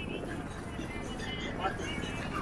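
Busy street ambience beside a beachfront road: background chatter of passers-by over a steady rumble of passing traffic and wind on the microphone, with some music mixed in.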